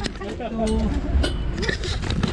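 People's voices, with several sharp knocks and clinks from the metal checker-plate floor and steel rails of a shuttle cart as people climb aboard.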